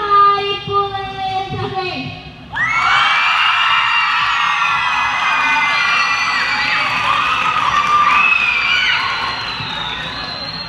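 A girl's voice for about two seconds, then a loud burst of many children shouting and cheering together that begins about two and a half seconds in and stays loud.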